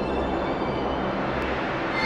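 Cinematic intro sound effect: a steady, dense low rumbling whoosh, like a jet passing, with no melody.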